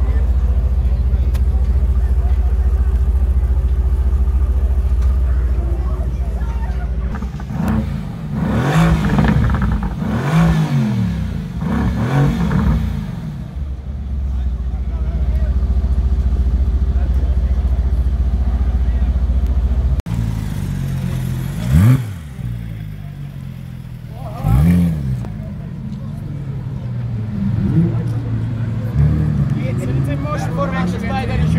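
Mercedes-AMG GT's twin-turbo V8 idling, then revved three times, each rev rising and falling, before settling back to idle. After a cut, another supercar engine is blipped sharply twice, with people talking.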